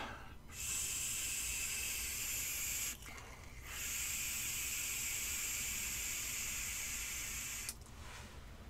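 A puff on an Aspire Nautilus X mouth-to-lung vape tank running at seventeen watts: breath drawn through the tank and vapour blown out. It is heard as two long breathy hisses with a short break about three seconds in.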